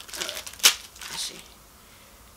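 Clear plastic bag crinkling and crackling as a blue silicone cellulite massage cup is worked out of it. There are several short crackles, the sharpest a little over half a second in, and the rustling stops about halfway through.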